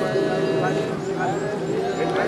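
Voices chanting in long, held, steady notes.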